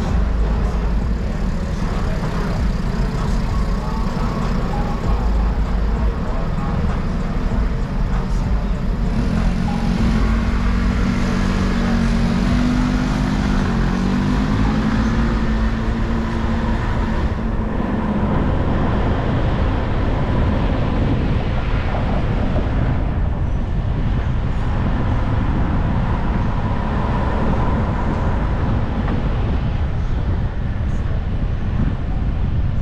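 Steady road and traffic noise of a car driving along a city street: engine and tyre rumble. A low drone that wavers in pitch rises over it from about a third of the way in to just past halfway.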